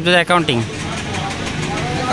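A man says a couple of words in Bengali at the start, then steady street traffic noise carries on under the pause.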